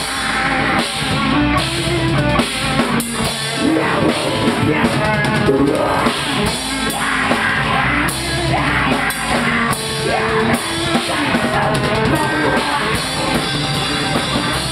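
A live heavy rock band playing loudly: electric guitars over a drum kit.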